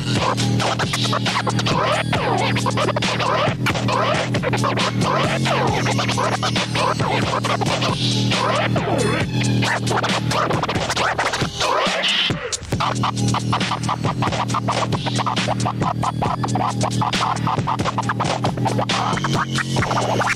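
Vinyl records being scratched on turntables over a hip-hop beat with a steady bass line: quick back-and-forth pitch sweeps of the scratched sound keep coming throughout. The beat and scratching briefly drop out about twelve seconds in, then start again.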